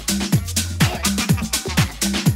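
Tech house music in a DJ mix: a steady kick-drum beat over a held bass line, with crisp hi-hats on top.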